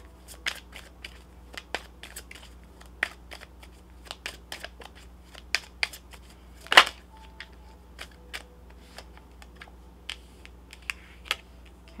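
Tarot cards being shuffled and handled: a string of irregular light clicks and taps, with one louder snap about seven seconds in.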